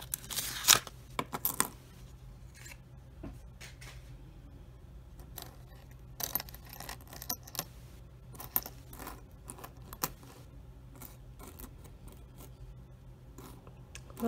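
Pennies clinking and sliding against one another as a roll is tipped out of its paper wrapper and spread across a coin mat by hand, in scattered irregular clicks, the loudest about a second in.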